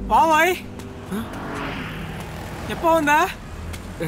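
A person's voice calls out loudly twice, once right at the start and again about three seconds in, over the steady noise of street traffic with cars and motorbikes.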